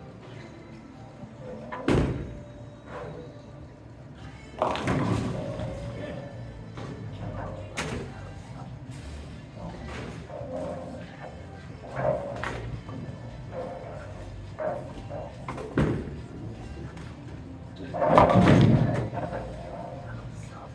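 Bowling alley sounds: sharp thuds of bowling balls and pins, with two longer crashes of pins being struck, the loudest near the end. Background music and chatter run underneath.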